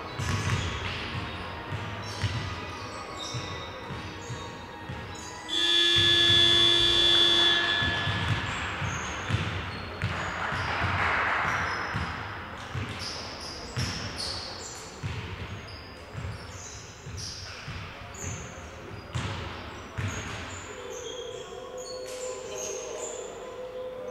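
Basketballs bouncing on a hardwood court during a warm-up shootaround, with voices echoing in a large sports hall. About six seconds in, a loud steady buzzer tone sounds for about two seconds.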